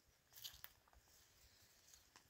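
Near silence, broken only by two or three faint, short clicks about half a second in.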